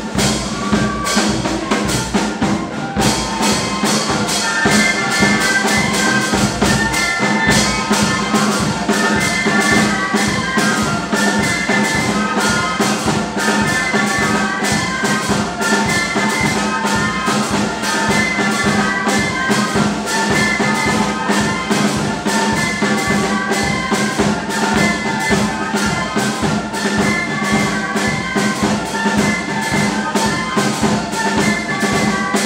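Brass band music with drums keeping a fast, steady beat.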